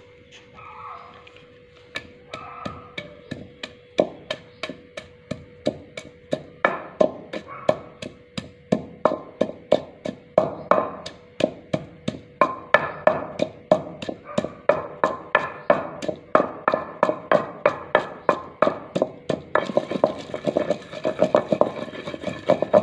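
Wooden pestle pounding garlic cloves in a terracotta mortar (kunda): a run of regular knocks that starts about two seconds in, at about two strokes a second, quickening and growing louder toward the end.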